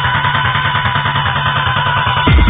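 Early-1990s techno/rave DJ mix in a breakdown: held synth tones over a fast, busy pulse and a steady bass note, with no kick drum. It sounds dull, with no treble.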